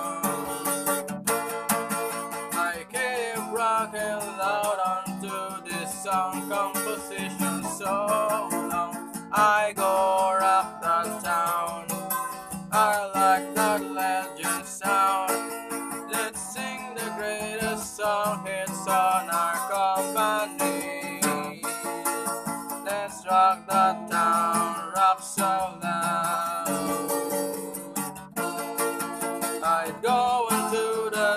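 A capoed steel-string acoustic guitar strummed in chords, with a voice singing over it.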